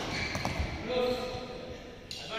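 Badminton play on an indoor court: a couple of sharp racket-on-shuttlecock or footwork knocks about half a second in, then a short call from a player about a second in, with the hall's echo.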